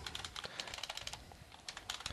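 Computer keyboard typing: a run of quick, irregular, faint keystrokes.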